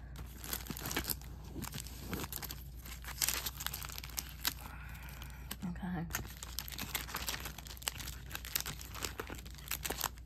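Plastic-sleeved cardboard sticker packs being handled and shuffled together, making an irregular run of crinkling and rustling with small clicks.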